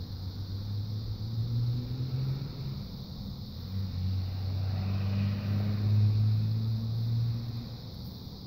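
A low, steady engine hum of a motor vehicle that swells twice, loudest about six seconds in, and fades near the end.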